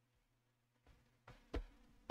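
Near silence, then a few separate keystrokes on a computer keyboard in the second half.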